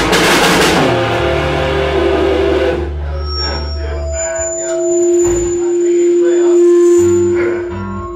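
A rock band rehearsing loudly on electric guitar and drum kit. About three seconds in the drums and cymbals stop, leaving ringing electric guitar notes, with one long held note.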